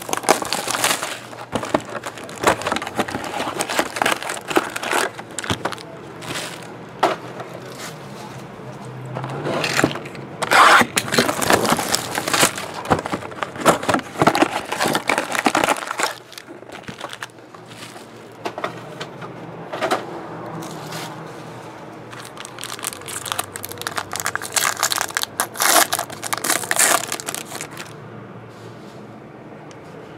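Plastic shrink wrap torn off a Topps Tribute baseball card box, then the box and its card packs opened by hand: crinkling, crackling and tearing in clusters, loudest about ten seconds in and again towards the end.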